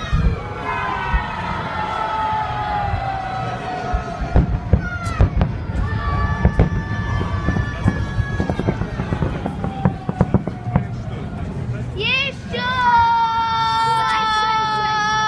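Salute fireworks: shell bursts and a dense run of crackling in the middle. Over them are long, drawn-out, high-pitched shouts from the crowd, the loudest starting near the end.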